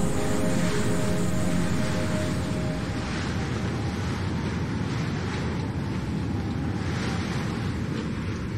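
Steady rushing noise like storm wind and surf, swelling slightly now and then and slowly getting quieter. The last held notes of the music fade out in the first couple of seconds.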